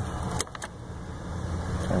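Steady low hum of the 1985 Buick LeSabre's 307 Oldsmobile V8 idling, heard from inside the cabin, with two light clicks about half a second in.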